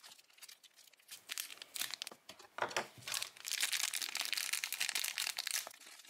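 Thin clear plastic bag crinkling as fingers handle it and pull it open: scattered crackles at first, then a continuous crinkle over the last few seconds.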